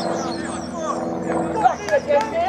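Distant voices of players on an open pitch over the steady hum of a vehicle engine, which fades near the end.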